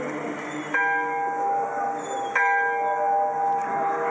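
A bell struck twice, about a second and a half apart, each strike ringing on with several steady tones.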